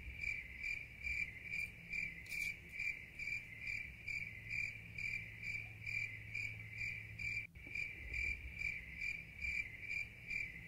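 Cricket chirping, even and regular at about three chirps a second: the 'crickets' sound effect marking an awkward silence after a comment with nothing to reply to.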